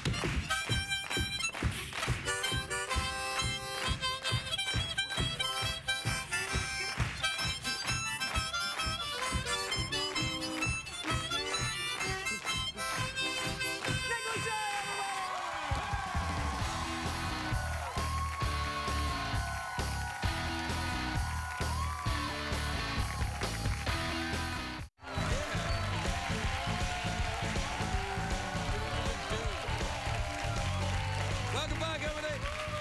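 Two harmonicas played together for about fifteen seconds in quick, reedy chords and runs. Then band music with a strong bass line takes over, breaks off completely for a moment about 25 seconds in, and starts again.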